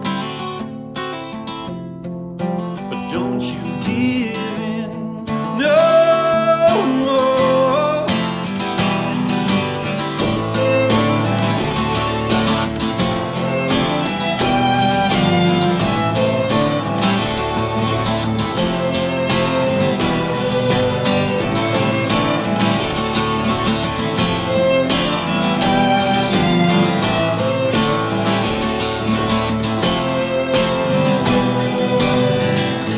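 Live folk song on acoustic guitar with a string trio of violin, cello and double bass. The guitar plays sparsely at first; about six seconds in a rising slide leads into a fuller, louder passage with the strings playing along.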